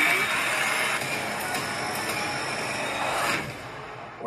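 Loud, dense horror-film trailer sound design with music: a sudden noisy hit that holds steady, then cuts off about three seconds in.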